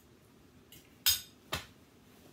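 A metal fork clinking against a plate as it is set down: two sharp clinks about half a second apart, the first the louder, after a faint tap.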